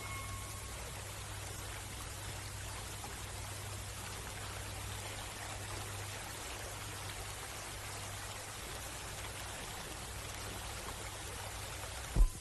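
Steady hiss with a low hum underneath: the background noise of an old film soundtrack. A held music chord fades out in the first second.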